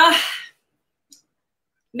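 Speech that ends about half a second in, followed by a near-silent gap of about a second and a half with a single faint click in it; speech resumes at the very end.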